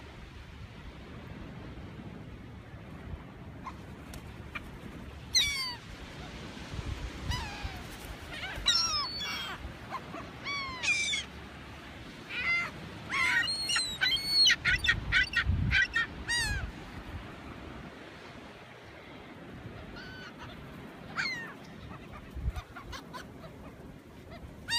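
A flock of gulls calling while being fed by hand. Bursts of short, sharp cries that fall in pitch come from several birds, thickest about halfway through, over steady background noise.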